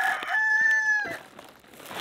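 The end of a rooster's crow: a long, level held note that stops about a second in.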